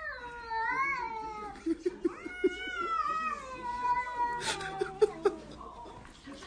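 A cat making two long, drawn-out wavering cries: the first rises and falls, and the second slides slowly down in pitch. Shorter cries and a few short knocks follow near the end.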